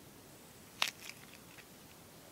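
A head of garlic being broken apart with a kitchen knife: one sharp, crisp crack a little before the middle, followed by a few faint crackles.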